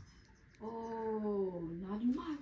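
A person's long, drawn-out vocal sound, held for about a second and a half; its pitch sags slowly, then turns upward near the end.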